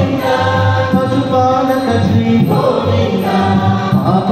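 Hindu devotional song to Lord Venkateswara: voices singing long, chant-like held notes over steady instrumental accompaniment.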